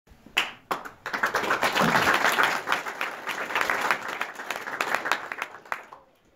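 Audience applauding in a hall: a couple of single claps, then full applause about a second in that thins out and stops near the end.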